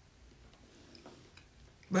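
Quiet room tone with a few faint, short clicks, then a woman begins speaking near the end.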